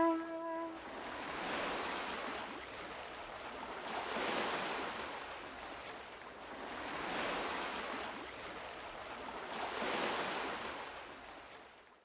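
Ocean waves breaking, the wash swelling and ebbing about every three seconds. A last held note of the song fades out in the first second, and the sound cuts off at the end.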